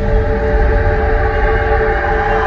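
A train horn holding a steady multi-note chord over a low, constant rumble of a train, as a sound effect over a dark soundtrack.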